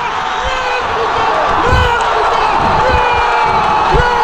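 Stadium crowd of football supporters cheering a goal, with loud, long shouts from fans right by the microphone, repeated every second or so, and a few dull thumps.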